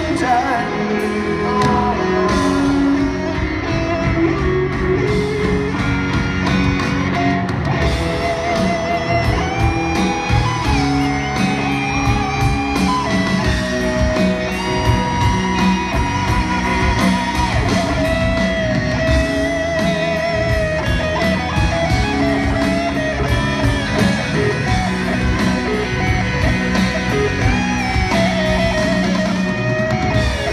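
Live rock band playing a power ballad over a stadium PA, led by a sustained electric guitar melody with wide vibrato over held chords, bass and drums: a lead guitar solo.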